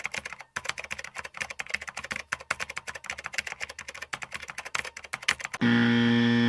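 Rapid typing on a computer keyboard: a fast, dense run of keystroke clicks. Near the end a steady, low, harsh buzzer tone starts.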